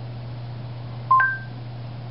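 Google Home smart speaker's short two-note electronic chime about a second in, a lower tone stepping up to a higher one. A steady low hum runs under it.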